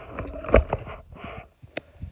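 Close rustling and knocking from handling, with a loud thump about a quarter of the way in and a sharp click near the end.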